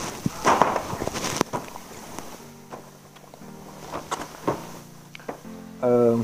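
Cardboard toy boxes being handled, with rustling and a few knocks in the first second and a half. Then quiet background music with held notes, and a voice beginning just at the end.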